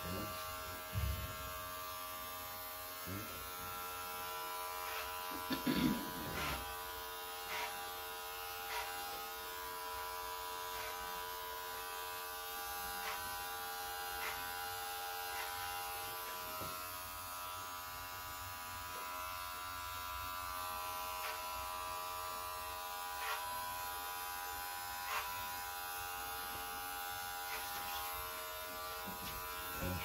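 Electric hair clipper running with a steady buzz as it cuts hair over a comb. A few light clicks come through every second or two.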